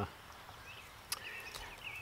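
Quiet garden background with a single soft click about a second in, followed by faint, thin chirping from a distant bird.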